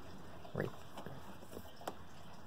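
A single short spoken word, a faint tick and then one sharp click near the end, from a hand handling the plastic case and connectors of a powerchair, over a low steady hiss.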